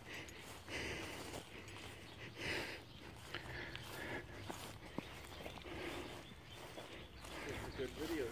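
Faint footsteps through grass and brush, irregular steps with soft rustling of leaves and a few small clicks.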